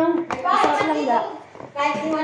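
Voices of people talking in a small room, with a brief knock about a third of a second in.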